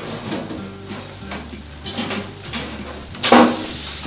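A gas oven's door swings open with a short squeak, then a few metal clicks. Near the end a metal roasting tray clatters as it is pulled out on the rack, and the hot chorizos and potatoes on it start sizzling steadily.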